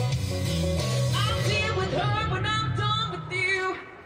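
A woman singing a rock song live through a PA, over amplified instrumental backing with a strong low bass line. The sound dips briefly just before the end.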